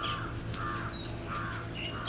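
A crow cawing about four times in quick succession, with a few brief high chirps from a smaller bird between the caws.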